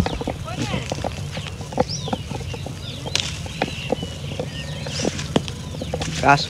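Birds chirping now and then over a low steady hum, with scattered light clicks.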